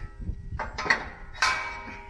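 Knocks and clanks from handling and fitting a steel cultivator shield, with a louder clank about a second and a half in that trails off.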